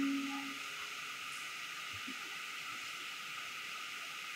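The last held notes of keyboard music die away in the first half-second, leaving a steady background hiss with a single faint knock about two seconds in.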